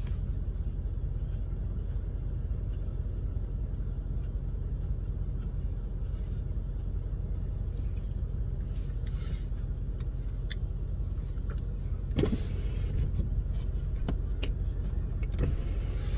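Steady low hum inside a stationary car's cabin, with a few short clicks and a brief rustle about twelve seconds in.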